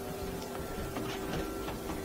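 Steady electrical hum of running equipment, holding a few fixed tones, with a few faint light handling knocks.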